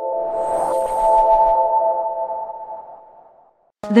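Electronic logo sting: a held, ringing chord of steady tones with a brief airy shimmer about half a second in, slowly fading away over about three seconds.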